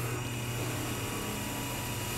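Steady low mechanical hum from a Spraymation automatic test panel machine and its spray booth, with the spray gun off as the machine goes to its initial position between coats.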